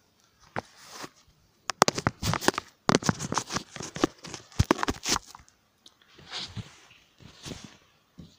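Handling noise from the recording phone as it is picked up and moved: an irregular string of knocks, clicks and rustles, followed by two softer hissing swells near the end.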